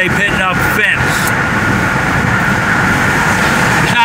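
Steady road and tyre noise of a moving car heard inside its cabin, with a thin steady tone running through it.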